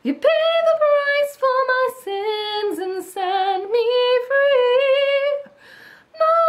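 A woman singing solo without accompaniment, the chorus line "You paid the price for my sins and set me free", in several short phrases with slight vibrato on the held notes.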